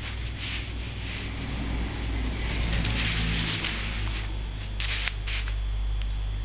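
Chinese painting brush dabbing and stroking on paper in short soft swishes: a few in the first second, a longer one in the middle, two near the end. A steady low hum runs underneath.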